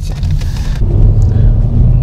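Hyundai Elantra's 2.0-litre four-cylinder engine and road noise heard inside the cabin, getting louder about a second in as the accelerator is pressed to the floor and the automatic pulls.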